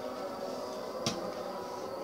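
A steady background hum with a faint high whine, broken by one sharp click about a second in.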